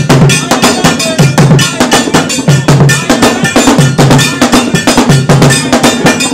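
Loud traditional Ashanti drumming with a struck metal bell, playing a fast, dense, steady rhythm.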